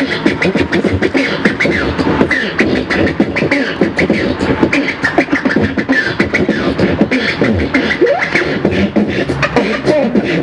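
Beatboxing: fast vocal percussion of mouth clicks and hits, with pitched vocal sounds woven in. It runs steadily as a music track.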